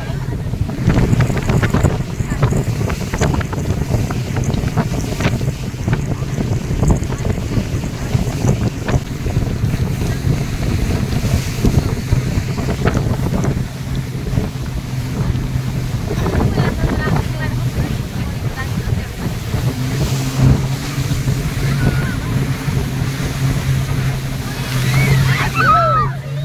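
A motorboat running at speed on a river: a steady low engine drone, which grows stronger in the last few seconds, under rushing water and wind buffeting the microphone.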